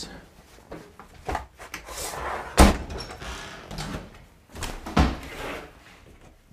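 Household knocks and thumps from laundry chores, with one loud, sharp bang about two and a half seconds in, like a door or lid shutting, and a second thump about five seconds in.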